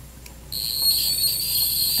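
Piezoelectric ultrasonic scaler (Satelec P5 Neutron) with its H4R perio tip touching a plastic typodont tooth, setting up a steady high-pitched whine that starts about half a second in. The whine comes from the vibrating tip on the plastic model and does not occur on real teeth.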